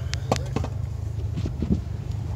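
Off-road vehicle's engine idling with a steady low rumble, with a few sharp clicks and knocks in the first second from handling inside the cab.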